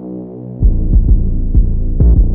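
Trap instrumental beat: held synth chords ring alone, then about half a second in a deep bass and drum hits drop back in.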